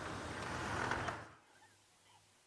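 Open safari vehicle driving along a sandy track: steady engine and road noise that cuts off suddenly a little over a second in, leaving quiet outdoor ambience.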